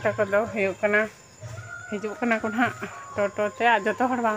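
Speech: a woman talking, with short pauses.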